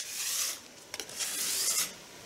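Sandpaper rubbed by hand across the lacquered top of a wooden stand in two strokes, a light sanding between coats of water-based craft lacquer.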